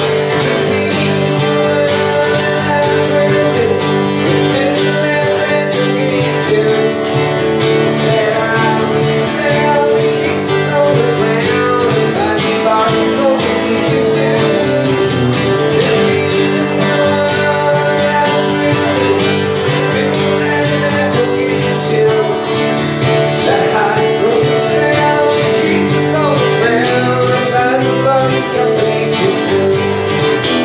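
A man singing over a steadily strummed acoustic guitar in a live solo performance.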